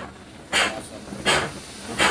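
Air-operated diaphragm pump transferring fuel, its air exhaust puffing out in rhythmic hisses about every three-quarters of a second as it shifts on each stroke.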